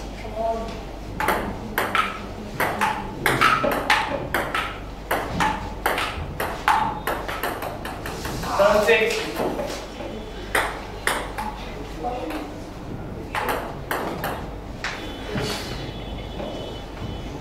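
Table tennis ball being hit back and forth in rallies, clicking on the paddles and bouncing on the table in quick runs of sharp ticks. The rallies break off for a moment about eight seconds in.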